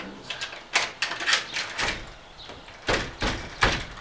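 Metal door chains being latched and the door tugged against them: a quick run of light metallic clicks and rattles, then three heavier knocks near the end as the door is pulled against the chains.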